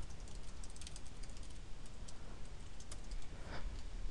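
Computer keyboard typing: a run of quick, faint keystrokes in uneven bursts.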